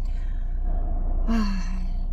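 A woman's sigh about a second and a half in: a short, breathy, falling voiced sound, over a steady low background rumble.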